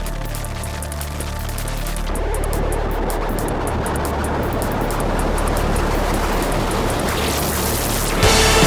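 Instrumental passage of an electronic shoegaze band playing live: a fast high ticking beat over low sustained bass notes, then from about two seconds in a dense wash of noise builds and grows louder.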